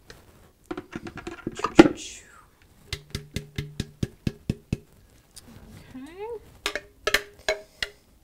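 A plastic food-processor bowl knocked and tapped against a mixing bowl to shake out a thick chickpea puree. There is one loud knock about two seconds in, then a quick, even run of taps, about four a second.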